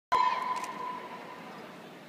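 A steady high-pitched tone with overtones, loud at the very start and fading away over about a second and a half.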